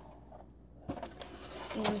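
A quiet room with one sharp click about a second in, likely from the snack packet being handled. Near the end a woman's voice starts speaking.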